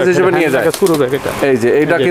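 Speech: a man talking, with no other sound standing out.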